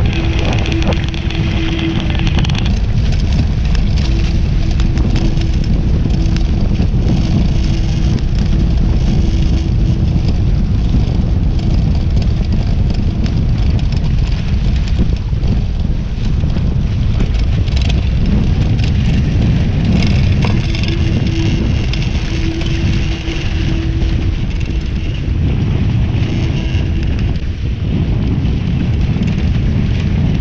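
Wind buffeting the microphone and water rushing and spraying along the hulls of a Hobie 16 catamaran sailing fast; steady and loud, with a faint thin hum that comes and goes.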